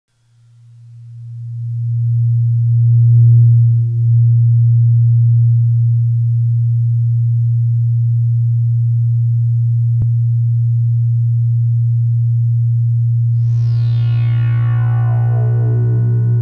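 Dark ambient synthesizer music. A deep, steady drone fades in over the first two seconds and holds, with a single click about ten seconds in. Near the end, a bright sweep of many tones comes in and falls in pitch.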